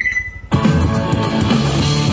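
Rock music with guitar playing through a scooter top-box speaker set. The music drops out at the start and comes back in about half a second in.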